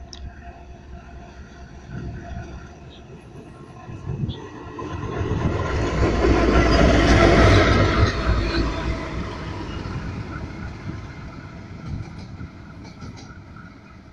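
MRS Logística diesel locomotive approaching and passing close by. Its engine rumble builds from about four seconds in, is loudest around seven seconds, then fades as it moves away.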